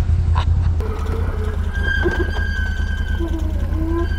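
Can-Am Renegade 1000 XMR ATV's V-twin engine idling, a steady low rumble, with a thin high steady tone over it from about two seconds in.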